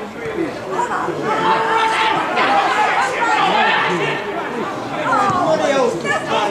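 Indistinct chatter: several people talking over one another, with no single clear voice.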